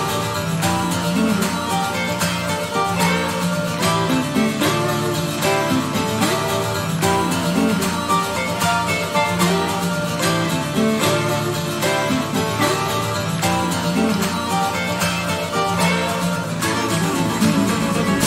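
Live acoustic guitar intro: a plucked melody ringing over held low notes.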